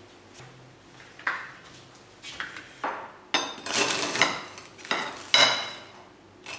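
A table knife cutting through toast on a ceramic plate: a run of scrapes and sharp clinks of the blade against the plate, starting about a second in and loudest in the second half.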